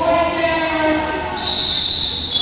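Voices shouting in a large hall, with a long, shrill referee's whistle starting about three-quarters of the way through.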